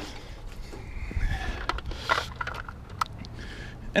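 Handling noise: a low rumble with a few light knocks and scrapes as a plastic tower air purifier is handled and moved about.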